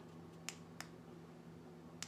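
Near silence: room tone with a low steady hum, broken by two faint short clicks about a third of a second apart about half a second in, and another at the very end.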